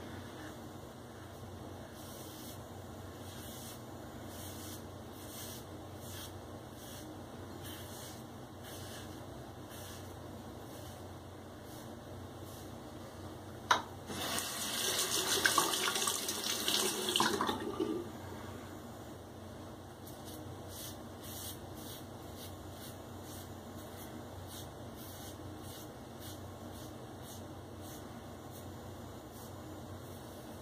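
Bathroom tap running steadily, with faint scraping strokes of an open-comb safety razor on the scalp. About 14 seconds in, a knock, then some four seconds of louder splashing, as the razor is rinsed under the stream.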